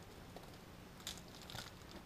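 Faint crinkling and rustling of plastic wrapping as a wrapped part is handled on a sawmill head, in two short bursts about a second in and half a second later.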